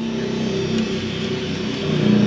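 A motor or engine running steadily with a low, even hum.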